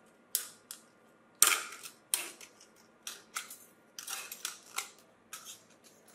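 Scissors snipping strips off the rim of a thin aluminium drink can: about a dozen sharp, crisp snips at irregular spacing, the loudest about a second and a half in.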